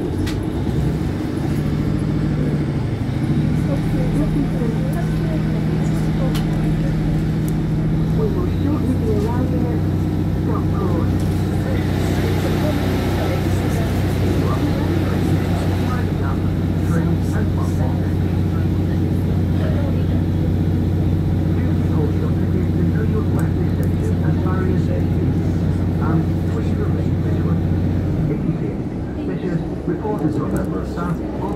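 Class 150 Sprinter diesel multiple unit heard from inside the carriage as it pulls away under power. The underfloor diesel engine runs at a steady note, drops to a lower steady drone about eight seconds in, typical of the hydraulic transmission changing up, and the engine note stops near the end as power is shut off.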